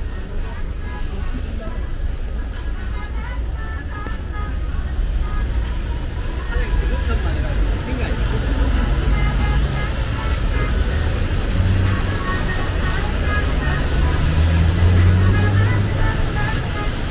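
Busy city street ambience: people talking, music playing from the shopfronts and the low rumble of traffic, with a low hum growing louder near the end.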